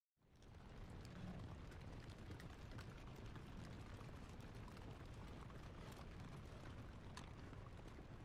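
Near silence: a faint, even low rumble with a few scattered faint ticks.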